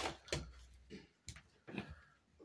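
Footsteps and phone handling noise: a few soft, irregular knocks and rustles.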